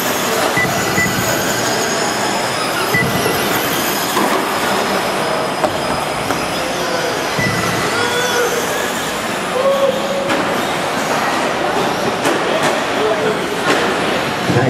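Radio-controlled short-course trucks racing on a dirt track: a steady wash of high motor and gear whine, with brief whining tones that rise and fall as the trucks accelerate and brake.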